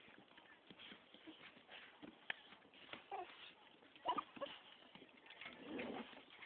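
American Staffordshire Terrier puppies making faint short squeaks and whines, with scattered light clicks and scuffles.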